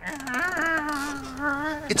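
Live sound effect of a small door creaking open: one long creak, nearly two seconds, with a slightly wavering pitch.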